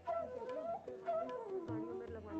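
Instrumental music: a flute melody with sliding, ornamented pitch bends.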